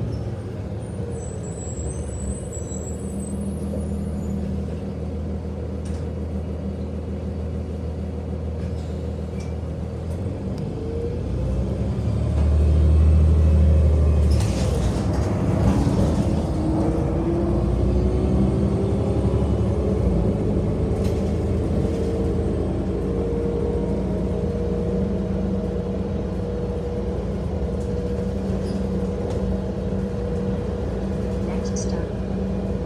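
Transit bus interior under way: steady engine and road noise, with a louder low hum about twelve seconds in. A run of rattles follows as the bus crosses railway tracks, then a whine rising in pitch as the bus picks up speed.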